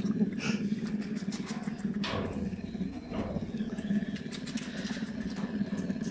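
Brown bear cubs suckling, one on a finger and the others on their own paws, making the steady, fast-pulsing nursing hum of calm, contented cubs.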